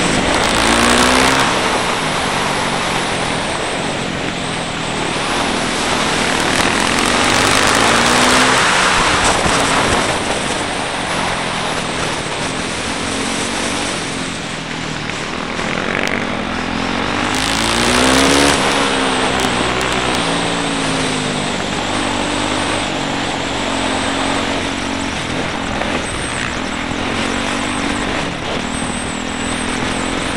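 Yamaha YZ450F's single-cylinder four-stroke engine being ridden hard, its pitch rising and falling again and again as the throttle opens and closes. It gets loudest near the start and again just past halfway, with wind rushing over the microphone.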